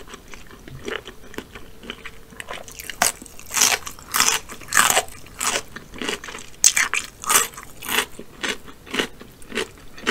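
Close-miked chewing of a bite of raw cucumber: soft mouth sounds at first, then from about three seconds in, loud crisp crunches about every half second.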